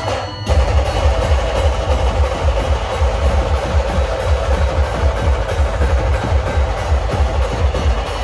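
Dhol-tasha style drumming, with fast heavy bass beats and dense sharp percussion, played loud through a truck-mounted DJ sound system. It breaks off briefly just after the start, then the beat starts again and runs on steadily.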